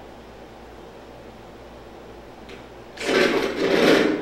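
Dry-erase marker writing on a whiteboard: faint at first, then a loud, noisy stretch lasting about a second, about three seconds in.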